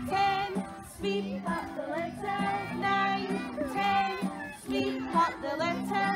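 Young children singing a song together over a music backing, in short sung phrases.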